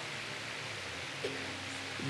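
Steady faint background hiss with no distinct event, apart from a brief faint blip about a second in.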